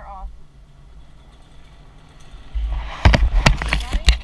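A pickup truck driving past close by on a dirt and gravel road, coming in with a low rumble over the second half and loose stones crunching and popping under its tyres in the last second or so.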